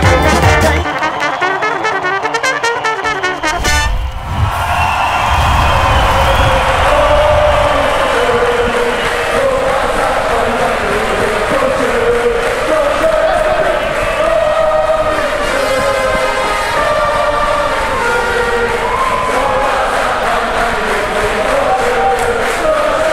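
Live brass band music with trumpet and trombone over drums. The drums and bass drop out about a second in, and from about four seconds in a slower, sustained melody carries on without them.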